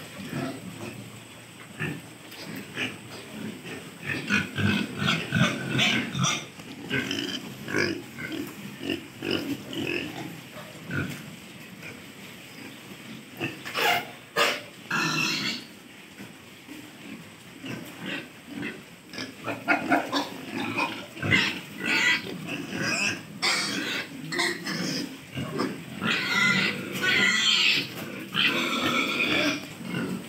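Several pigs grunting on and off, with louder, higher-pitched calls about halfway through and again near the end.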